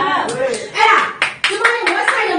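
A few scattered hand claps from the audience in the second half, over speech.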